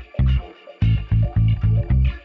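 Background music: a funky groove of short, punchy bass guitar notes with guitar over it, in a stop-start rhythm.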